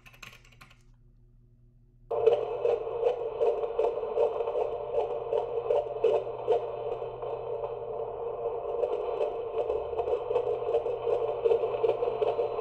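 A handheld fetal Doppler monitor picking up the baby's heartbeat. After about two seconds of low hum, a fast, rhythmic whooshing pulse comes in through the monitor's speaker and keeps going.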